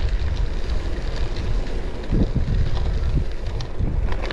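Wind buffeting the microphone of a camera on a moving bicycle, a steady low rumble, with faint crunching of tyres rolling over a dirt path.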